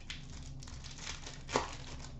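Hockey trading cards being handled and flipped through by hand: a soft rustle, with one brief, louder swish about one and a half seconds in.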